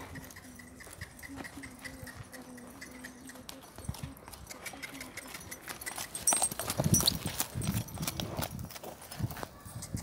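Horse's hooves clip-clopping in an uneven run of knocks, louder from about six seconds in.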